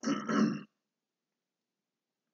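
A man clearing his throat once, briefly.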